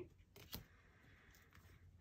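Near silence, with two faint light clicks about half a second in as tarot cards are handled.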